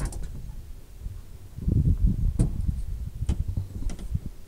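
Low, steady rumble of a camper van's engine running at idle after being stopped over a drain channel, with a few light clicks or knocks.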